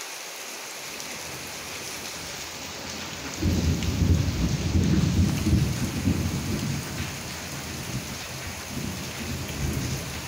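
Steady rain falling, with a roll of thunder that starts suddenly about three and a half seconds in, is loudest for a couple of seconds, then fades to a lower rumble, swelling slightly again near the end.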